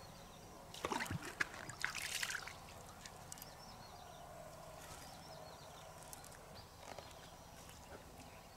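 River water splashing and sloshing as an object is dunked at the bank, about a second in and lasting a second or so, then only a faint steady background.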